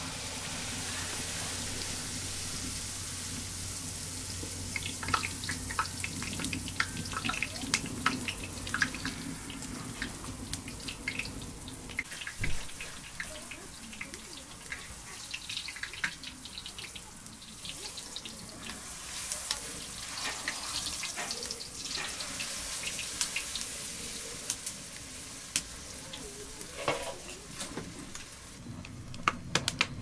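Flatbread dough frying in a wide pan of hot oil: a steady sizzle that comes up as the dough goes in, with many short sharp pops and crackles scattered through it.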